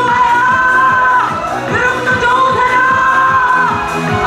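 Korean trot disco medley: a woman singing long held notes into a microphone over a backing track with a steady dance beat.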